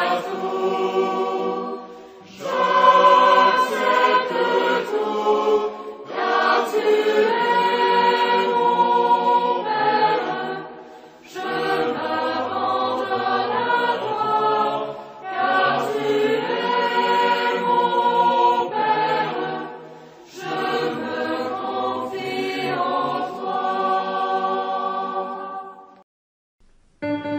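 A choir singing a slow worship song in sustained phrases, with brief breaks between them. The song fades out at the very end.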